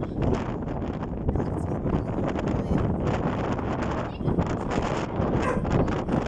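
Wind buffeting a phone's microphone on the open deck of a moving ferry, in uneven gusts.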